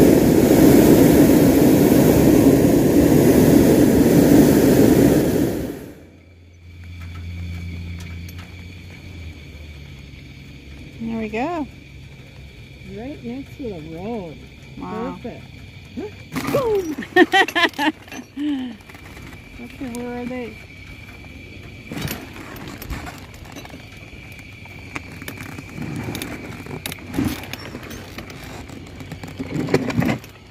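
Hot air balloon's propane burner firing, a loud, steady blast for about six seconds that cuts off suddenly.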